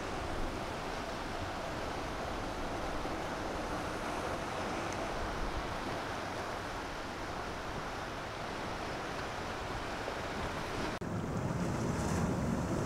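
Ocean surf washing steadily against a rocky shore, with wind rumbling on the microphone.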